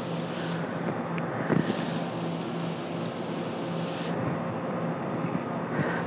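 Steady city traffic noise with a low hum underneath; a rushing swell rises and fades in the middle, like a vehicle going by.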